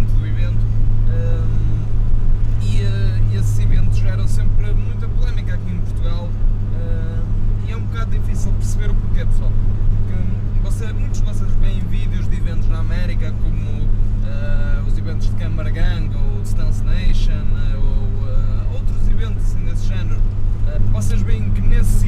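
A man talking over the steady low drone of a Nissan 100NX's engine and road noise, heard from inside the cabin while the car cruises.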